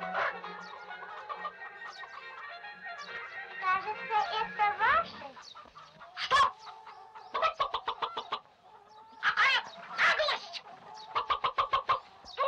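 Orchestral music with sustained notes, ending in a quick rising run about five seconds in. Then come rapid clucking and squawking calls from two animated roosters, in short, separated bursts.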